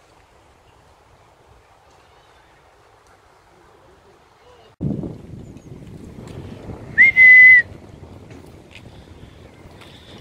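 A loud, single-pitched whistle about seven seconds in, a quick blip then a held note of about half a second, given to call the dogs. From about five seconds in, wind rumbles on the microphone.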